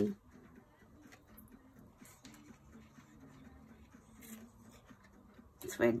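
Faint rustling and light ticks of baker's twine and a small paper tag being handled as the twine is threaded through the tag's hole, with a faint low tune underneath.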